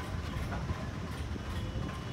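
Steady low rumble of outdoor background noise, with a faint thin whine above it.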